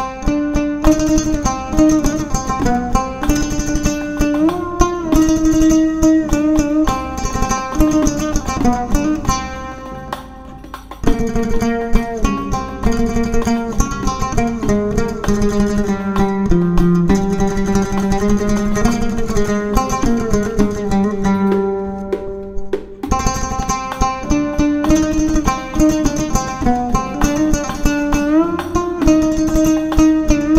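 Solo oud playing a sama'i melody with fast, ornamented plucked notes. About eleven seconds in, the line drops to a lower, slower passage with held notes, and the earlier higher phrase returns near the end.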